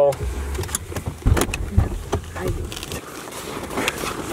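Car interior sound: a low engine and road rumble that fades out about halfway through, with several sharp clicks and knocks.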